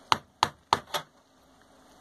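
Four light, sharp clicks about a third of a second apart in the first second, from bolts being put into the Honda XL500's rocker box on the cylinder head.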